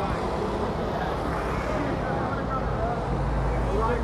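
City street traffic passing close by, with car and motor scooter engines. A low engine rumble swells near the end, under faint chatter from passers-by.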